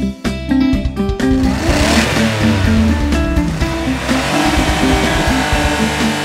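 Cartoon engine sound effect of a monster truck revving as it drives in, swelling about a second in and fading toward the end, over upbeat background music.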